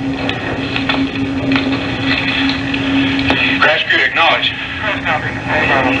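Air traffic control radio recording: a steady hum over constant radio hiss, broken about three and a half seconds in by short stretches of indistinct voices.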